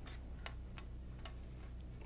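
A handful of light, irregularly spaced clicks and ticks as wires and the printer's plastic base parts are handled and shifted, over a steady low hum.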